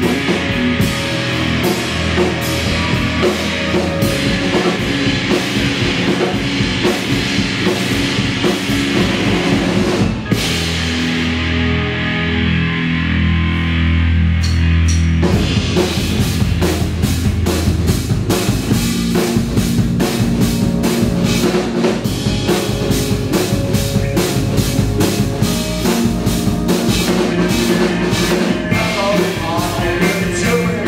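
Live rock band playing an instrumental passage on electric bass, electric guitar, keyboard and drum kit. About ten seconds in, the cymbals and drums drop back, leaving held bass notes. The full kit comes back in about five seconds later.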